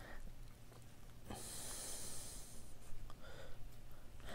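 One quiet breath out through the nose, lasting over a second, about a third of the way in. Faint small clicks and rustles of gloved hands working the coyote's ear hide follow near the end.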